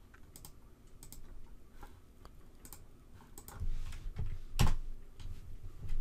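Typing on a computer keyboard: irregular keystroke clicks spread through, the loudest about four and a half seconds in.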